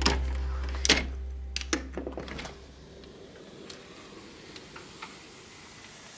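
Background music fading out over about three seconds while a glass balcony door is unlatched and opened: a few sharp clicks and knocks from its handle and latch in the first two and a half seconds. After that only a faint steady outdoor hum.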